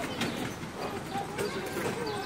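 Faint voices of people talking in the background, with a few soft clicks.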